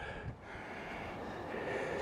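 Steady low background noise, an even hiss with no distinct event in it.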